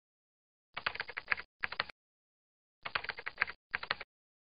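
Keyboard typing sound effect: short runs of rapid key clicks, one about a second in and another about three seconds in, each broken by a brief pause, with dead silence between them.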